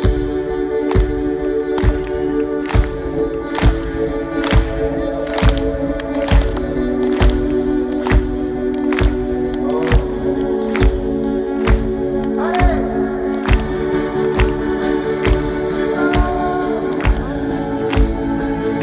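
Rock band playing live, heard from within a large open-air crowd: a steady drum beat a little faster than once a second under long sustained chords that shift a couple of times, with little or no clear singing.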